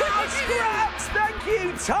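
A sock puppet's high, swooping cartoon chatter, its time-up call, over children's background music with a steady beat.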